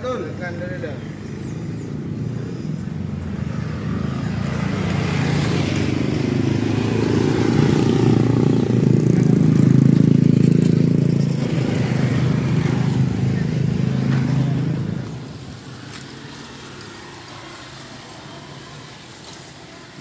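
A motor vehicle engine running, growing louder to its loudest about ten seconds in and then dropping away abruptly about fifteen seconds in, leaving quieter background noise.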